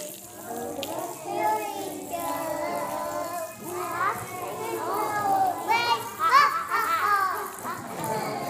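Several children's voices talking and calling over one another, with a few high-pitched rising calls about six seconds in.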